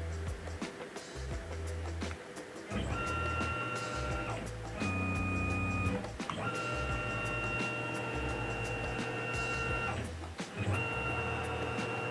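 CNC mill table's axis drive whining steadily as the table is jogged to sweep a dial test indicator along the fixture plate's edge, checking that the plate is square to the spindle. The whine comes in several runs with short pauses, one shorter run at a different pitch, over background music.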